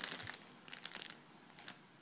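Faint crinkling of clear plastic zip-top bags being handled, a few brief rustles at the start, just under a second in and again near the end.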